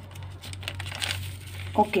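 Paper rustling and crinkling as notebook pages are handled, in irregular light scrapes over a low steady hum.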